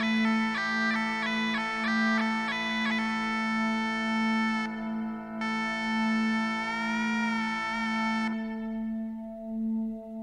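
Bagpipes playing: the chanter runs through a quick melody over the steady drones, then holds one long note that wavers near the end and cuts off about eight seconds in, leaving the drones sounding alone.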